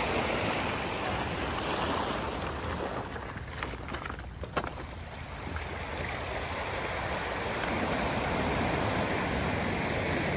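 Small surf washing over a cobblestone beach: a steady rush of water on stones that eases briefly about halfway through, where a few sharp clicks stand out.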